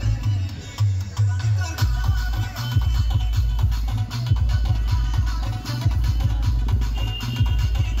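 Loud DJ dance music played through a large sound system, with heavy bass and a steady beat.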